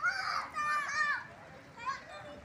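High-pitched children's voices calling out and shouting, in a burst lasting about a second and again briefly near the end.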